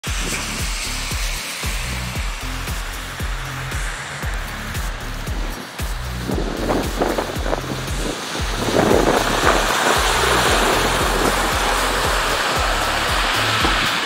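Background music with a steady beat. From about six seconds in, a rushing noise builds and stays loud from about nine seconds on as a snowplow's front blade passes close by, pushing a wave of snow off the road.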